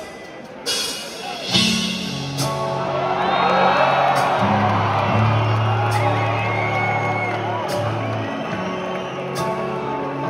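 Arena crowd cheering, whooping and whistling as a band's slow opening begins, with long held low notes changing every second or two. Heard through a phone's microphone in a large hall.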